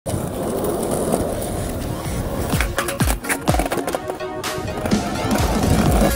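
Skateboard wheels rolling on a paved court. About halfway in, music with a beat of deep, falling bass kicks comes in over it.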